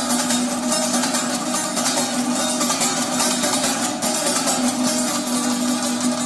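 Instrumental Persian traditional music played on string instruments, with rapid, dense picking over a steady held low note and no voice.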